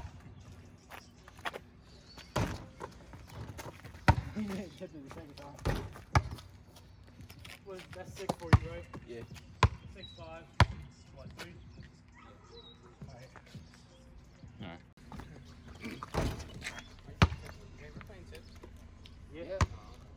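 Basketball bouncing on an asphalt street, sharp single bounces at irregular intervals of a second or more, with voices talking between them.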